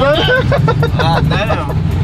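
Chevy cateye pickup's engine idling with a steady low rumble, off the throttle as the clutch is let out in reverse.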